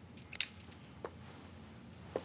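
Hand pruning snips cutting a shrub stem: one sharp snip about a third of a second in, then a fainter click about a second in.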